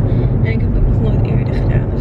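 Steady low rumble of a car driving, heard from inside the cabin: road and engine noise.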